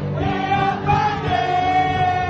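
Live music: a voice sings a melody over steady accompaniment, holding one long note through the second half.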